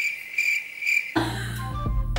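Cricket chirping used as an 'awkward silence' sound effect, about three pulsing chirps, with the background music cut out beneath it. The music comes back in a little over a second in.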